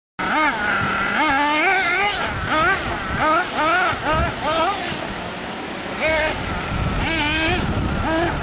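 Nitro RC buggy's small two-stroke glow engine revving up and down over and over as the throttle is worked, its high whine rising and falling every half second or so. It drops back for a second or so in the middle, then climbs again.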